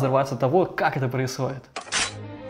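A man's voice talking or exclaiming in a rising-and-falling, sing-song way, with words the recogniser did not catch, for about the first second and a half. Near the end it breaks off and a short, hissy burst of sound starts abruptly.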